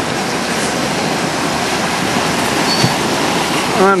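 Dense, steady rush of splashing water as a large school of dolphins stampedes through the surface close to the boat.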